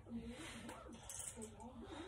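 Faint, indistinct background voices with no clear words.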